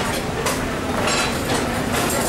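Busy buffet restaurant background noise: a steady rumble with a few short clinks and clatters, about half a second and a second in.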